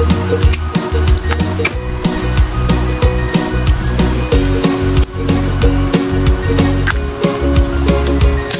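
Background music with a steady beat, a pulsing bass line and held tones.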